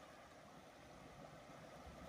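Near silence: a faint, steady rush of the flowing river.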